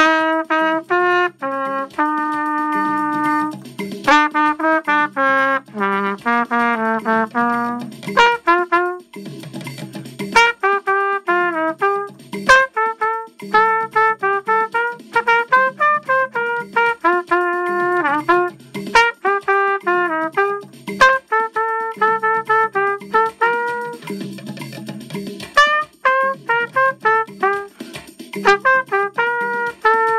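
Trumpet playing a lively dance melody: runs of quick short notes alternating with a few held notes, with short breaks between phrases.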